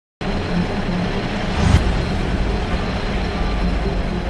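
Heavy diesel machinery engine running steadily with a low rumble, with one sharp knock a little under two seconds in.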